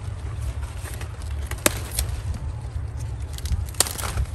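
Cauliflower stalks and leaves being broken as a head is harvested by hand, with three sharp snaps, the last near the end, over a steady low rumble.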